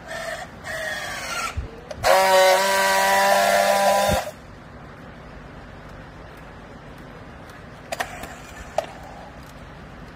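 Battery-powered handheld plastic-strap strapping tool working a bale strap: short spurts of motor whine as it tensions the strap, then a loud steady drone for about two seconds as it friction-welds the strap, cutting off suddenly. Two sharp clicks near the end.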